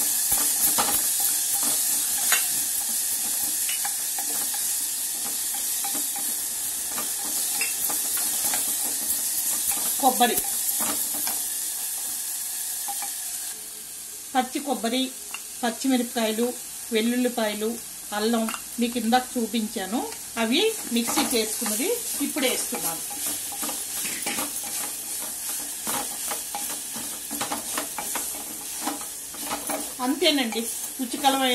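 Chopped sword beans sizzling in oil in a clay pot, with a wooden spoon stirring and scraping through them. The hiss quietens about halfway through.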